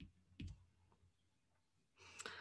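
Two faint clicks of a stylus tapping a tablet screen during handwriting, about half a second apart, then near silence.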